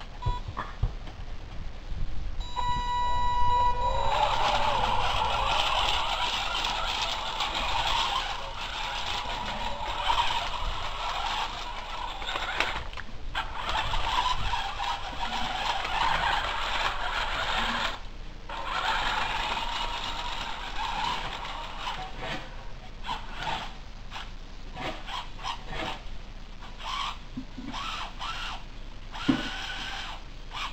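Electric gear motors of a wooden Theo Jansen-style walking robot, run through an H-bridge. A steady high whine starts a little over two seconds in, then the motors and crank-driven leg linkages give a dense, continuous clatter with two brief pauses. Over the last third it thins to intermittent clicks and rattles. The builder reports that the leg mechanism on one side is jarring.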